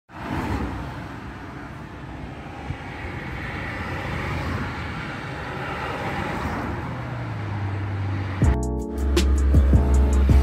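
Roadside traffic noise, a steady wash that swells as a vehicle goes by. About eight and a half seconds in, background music with a heavy bass starts.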